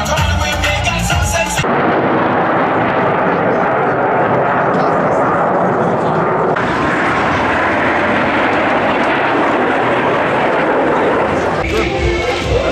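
Jet aircraft flying over in formation: a loud, steady jet roar that cuts in abruptly after a second or two of music and loses some of its hiss about halfway through. Music returns near the end.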